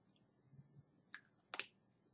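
Near silence with two faint, short clicks about half a second apart, after a brief soft low hum.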